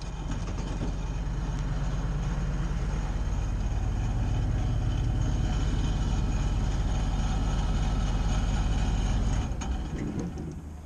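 Bucket truck running with its hydraulics working as the Altec boom swings, a steady low engine hum that builds slightly, then drops off sharply near the end.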